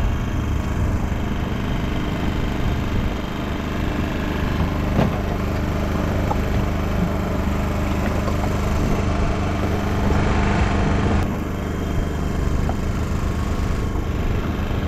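A small engine running steadily at idle, an even low hum, with one sharp knock about five seconds in.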